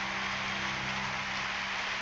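Audience applause, an even clatter of many hands clapping, at the end of a song.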